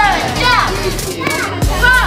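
A young child's high voice calling out over background music, with a dull thud of a boxing glove landing on a focus mitt about three-quarters of the way in.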